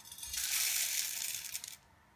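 Whole coffee beans poured from a small stainless steel cup into the funnel of a stainless manual coffee grinder: a dense rush of rattling beans for about a second and a half that stops shortly before the end.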